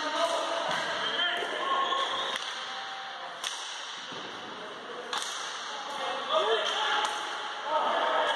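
Players' voices calling out on a hockey court, echoing around a sports hall. Several sharp clacks of hockey sticks striking the puck or the floor break through.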